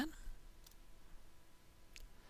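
Two faint computer keyboard keystrokes against quiet room tone, the second near the end.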